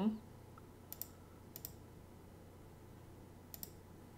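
Three computer mouse clicks, each a quick press-and-release pair: about a second in, again half a second later, and near the end.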